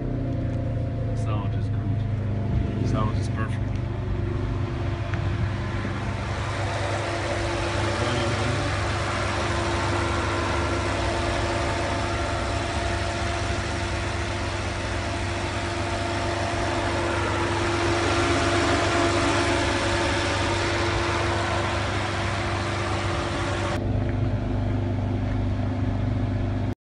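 Ferrari 599 GTB's 6.0-litre V12 idling steadily, with a few light clicks in the first seconds.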